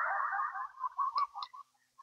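A man's voice fading out in an echo tail after his last word, dying away over about a second and a half with a few faint clicks, then near silence.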